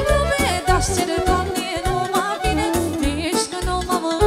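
A woman singing a Romanian folk party song (muzică populară) live into a microphone. Her voice bends and wavers in pitch over a band with a steady bass beat.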